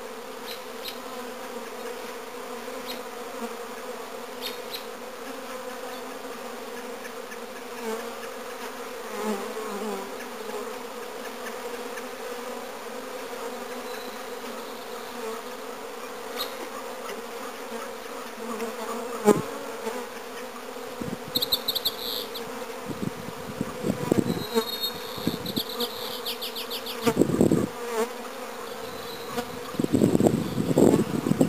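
Honeybees buzzing in a steady drone around a freshly installed package hive. In the last third, short high chirps and irregular low thumps come in over the buzzing.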